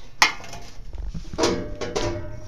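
Metal clicks and clatter as the cover of a bandsaw's upper wheel housing is unlatched and handled: one sharp click just after the start, then a louder clatter with a brief ring past the middle.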